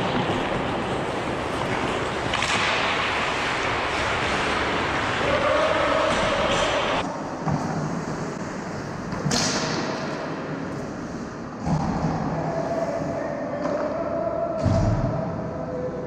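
Ice hockey play in an indoor rink: a steady rush of skates scraping the ice, with occasional knocks of sticks and puck. The sound changes abruptly several times.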